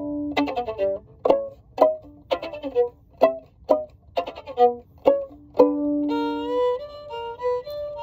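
Solo violin playing short, sharply accented notes and chords about two a second, then longer held bowed notes from about six seconds in.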